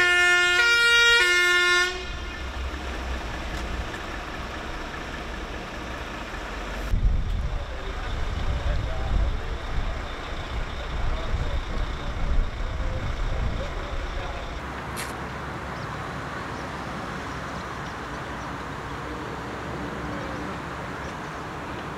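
Fire engine's two-tone siren alternating between a high and a low note, cutting off suddenly about two seconds in. Then a quieter steady low rumble with irregular swells.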